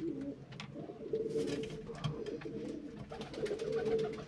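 Domestic pigeons cooing continuously, the coos overlapping, with a few faint clicks.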